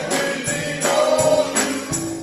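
Gospel singing by a small male vocal group, with hand claps and a tambourine on a steady beat of about three strokes a second.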